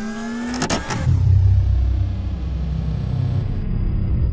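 Jet-like engine sound effect for a take-off. A whine rises slowly through the first second, then gives way to a steady low rumble.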